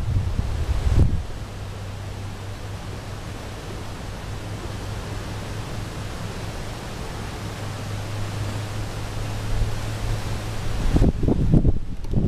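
Wind buffeting the microphone in low rumbling gusts during the first second and again near the end, with a steady outdoor hiss in between.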